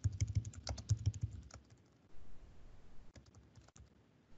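Typing on a computer keyboard: a quick run of keystrokes, then a brief pause and sparser keystrokes.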